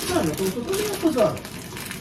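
People talking, mostly in the first second and a half, with voices that rise and fall in pitch.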